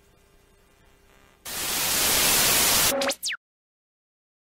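A loud burst of white-noise static, about a second and a half long, starting abruptly after faint room tone. It ends in a quick falling whistle and then cuts to dead silence, a video-editing transition effect leading into a new section.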